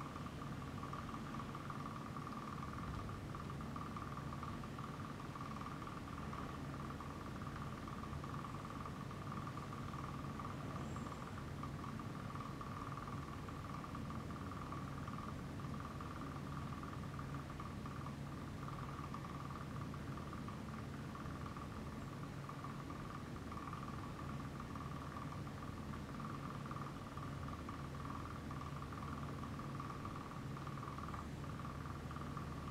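Steady hum of lab equipment running, with a thin, constant high whine over a low drone and no other events.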